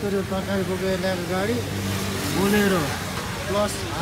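A man talking, with street traffic noise underneath.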